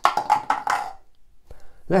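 A man's voice: a short, breathy vocal sound in the first second, a pause, then speech starting again near the end.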